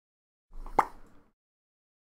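A single short pop near the start, with a faint rustle around it.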